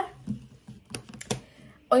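A few irregular taps on a laptop keyboard, sharp single clicks spaced unevenly over about a second.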